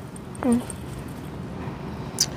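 A short spoken 'ừ' (a brief 'uh-huh') about half a second in, then quiet, steady outdoor background noise.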